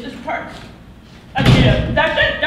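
A single loud, heavy thump, like a slam, about one and a half seconds in, with a low boom hanging on after it in the room.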